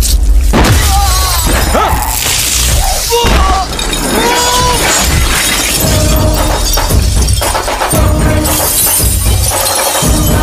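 Dramatic film background music with a heavy bass, with the sound of glass shattering over it.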